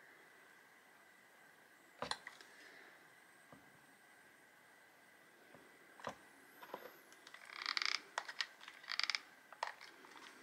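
Quiet tabletop handling: a few isolated sharp clicks and taps of small hard objects (resin roses, a hot glue gun) being picked up and set down, then a quick flurry of light clicks and rustles near the end. A faint steady high tone runs underneath.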